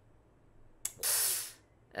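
A short click, then a sharp half-second hissing breath drawn in close to the microphone, about a second in.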